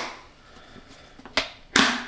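A plastic food container being handled on a kitchen counter: a light click, then a louder short clatter near the end.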